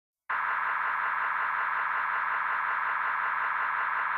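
Steady, radio-static-like filtered hiss in the middle range, starting just after the beginning and holding at an even level, as an electronic intro effect to the track.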